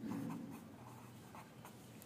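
A pen writing by hand on paper on a clipboard: faint, short scratching strokes as a single short word is written.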